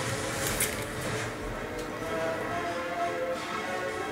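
Quiet background music with faint held notes, under light ticks and rustles of trading cards and a plastic top-loader being handled.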